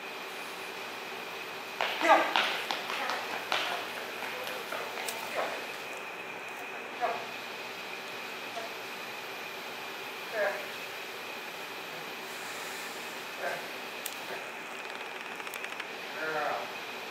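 A man's short, scattered words spoken to a dog, a cluster of them early on and then single words every few seconds, over a steady background hum with a faint high whine.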